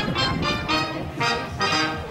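Cobla dance music playing a galop: a lively tune in quick notes, with a held note or two near the end.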